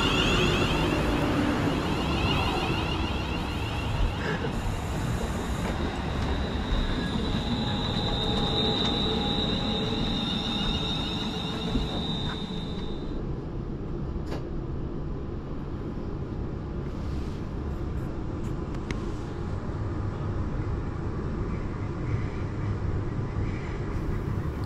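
Class 350 electric multiple unit pulling into the platform, with a shifting whine from its motors and brakes as it slows, then a steady high whine for several seconds as it comes to a stand. About halfway through, the sound turns to the steady rumble of the train running, heard from inside the carriage.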